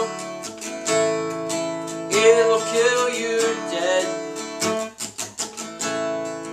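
Acoustic guitar strummed in a steady rhythm, with a man singing an improvised tune over it.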